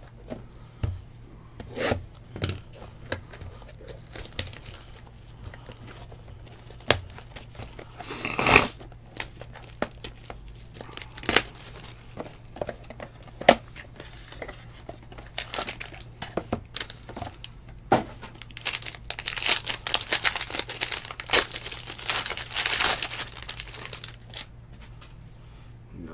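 Plastic trading-card pack wrapper being torn open and crinkled by hand, with scattered sharp clicks and taps as the cards and packaging are handled. The crinkling is densest in the last third.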